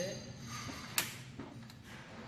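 A sharp metallic clack about a second in, with a few lighter clicks around it, as the lid of an aluminium steamer tray on a portable gas stove is handled, over a faint steady hiss.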